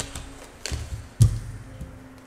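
A few knocks of hands and tarot cards on a hard tabletop: a light tap, then a sharp thump a little over a second in.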